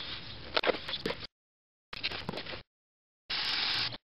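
A small garden trowel scraping and stirring gritty, wet cement mix against a plastic tub, with a few sharp clicks of gravel. It comes in three short bursts, each cut off suddenly by dead silence.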